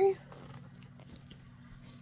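Faint rustles and small clicks from a leather-look purse being handled and set down, over a low steady hum.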